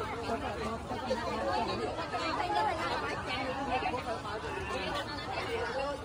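Many people talking at once: a steady crowd chatter of overlapping voices.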